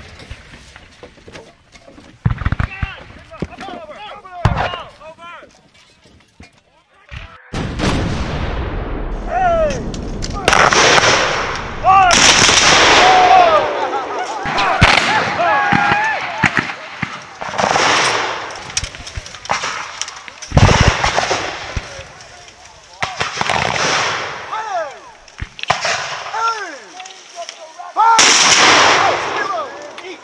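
Black-powder muskets firing: a few separate shots at first, then from about seven seconds in, heavy firing with loud massed volleys every two to three seconds. Men shout and yell among the shots.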